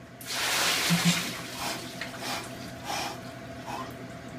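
A bucket of ice water poured over a man's head, splashing down into an ice-bath tub: a sudden rush of water that is loudest in the first second and trails off.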